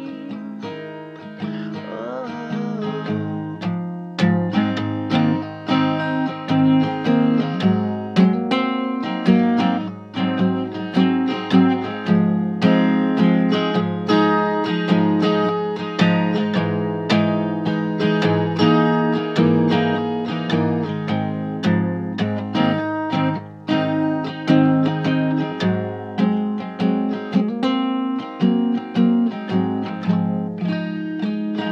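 Acoustic guitar played solo, an instrumental passage of strummed chords that builds into a steady, even strumming rhythm a few seconds in.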